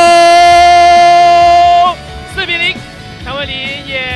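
A football commentator's long drawn-out goal shout, held on one steady note for about two seconds before breaking off, followed by shorter excited calls.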